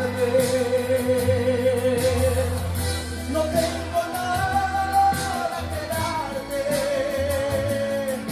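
Male singer with a microphone over a karaoke backing track, singing a Spanish-language song in three long held notes with vibrato, the middle one rising higher.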